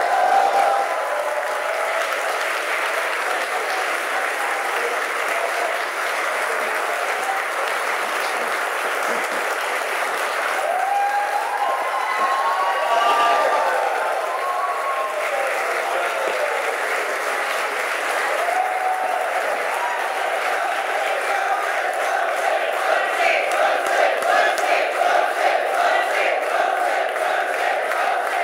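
A large audience applauding steadily, with shouts and cheers rising out of the clapping now and then. Near the end the clapping falls into a rhythm of about two claps a second.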